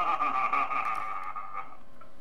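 A high-pitched, wavering vocal whine that stops abruptly after about a second and a half.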